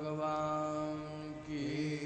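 Amplified voice chanting a long, drawn-out 'jai' in a Hindu jaikara invocation. The note is held steady for about a second and a half, then the pitch shifts.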